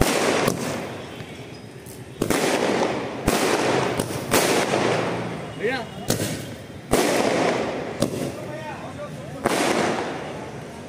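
Fireworks going off: a string of about nine loud bangs at uneven intervals, each trailing off with a rumbling echo.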